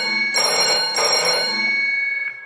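Old-style telephone bell ringing in quick repeated bursts, a sound effect announcing an incoming phone call.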